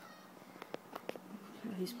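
A few light clicks of insulin pump buttons being pressed as a blood sugar number is keyed in, followed near the end by a woman starting to speak.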